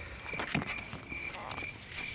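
A small night animal calling: a short, high note repeated evenly about two or three times a second. Faint clicks and rustles come through, one louder knock about half a second in.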